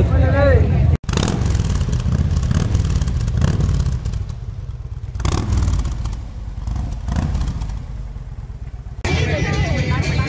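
Motorcycle engine running with a deep, steady rumble that swells a few times and fades lower in the second half. It is framed by a man's voice at the start and crowd chatter near the end.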